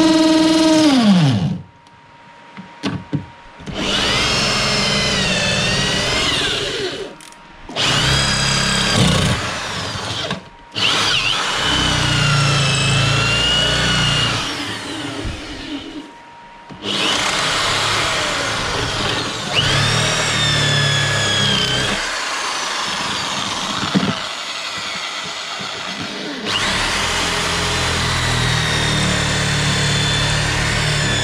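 Corded electric drill boring out sheet-metal spot welds on a car body. It runs in bursts of a few seconds with short pauses, and its whine dips and rises as the bit bites into the steel.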